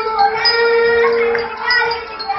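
Children's choir singing an Arabic song into microphones, holding one note for about a second in the middle.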